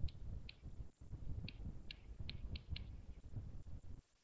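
About eight small, sharp clicks, irregularly spaced, over a low rumble: a computer being clicked while a document is scrolled.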